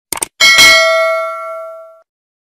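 Subscribe-animation sound effect: a short mouse-click sound, then a bell chime for the notification bell that rings out and fades over about a second and a half.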